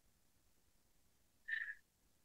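Near silence broken about a second and a half in by one short, high chirp-like sound lasting about a third of a second.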